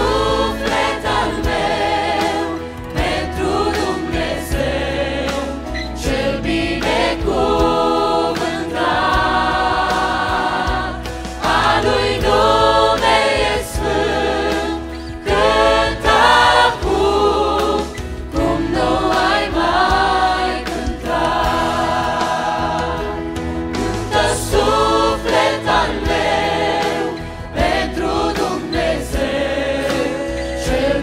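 Mixed choir of men and women singing a Romanian worship song, with lead voices on microphones over instrumental backing.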